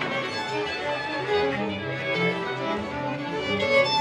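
A small orchestra's string section playing classical music, with violins carrying the melody over lower strings.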